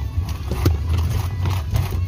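Vehicle driving slowly over a rough dirt track, heard from inside the cabin: a steady low rumble with irregular knocks and rattles from the bumps, the loudest about two-thirds of a second in.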